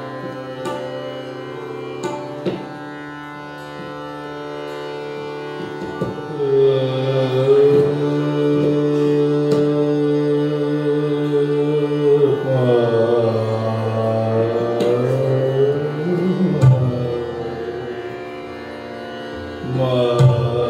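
Hindustani classical vocal music: a male singer with tanpura drone, harmonium and tabla. Over the drone the tabla plays a few light strokes at first. About six seconds in, the voice holds one long note, then moves into ornamented runs before easing off near the end.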